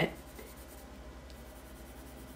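Colored pencil rubbing faintly on paper in small back-and-forth strokes as an area is shaded in.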